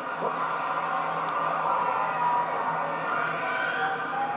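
An audience laughing and reacting as a steady wash of crowd noise, heard from a television speaker.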